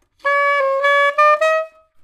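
Alto saxophone playing a short legato phrase of about five notes: a small step down and back, then climbing, ending on the highest note, which is held briefly and fades.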